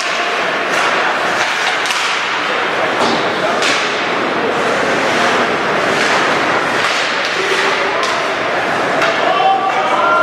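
Ice hockey game sounds in a rink: a steady hubbub of crowd and player voices, broken by scattered sharp knocks and thuds of sticks, puck and bodies against the boards.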